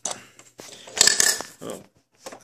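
Hard plastic toy parts knocking and clattering as a small Playmobil bin is handled against the refuse truck's rear bin lifter, with the loudest knocks about a second in. A man says "oh" near the end.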